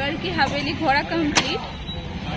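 A woman talking close to the microphone, with wind rumbling on the microphone and one sharp click about one and a half seconds in.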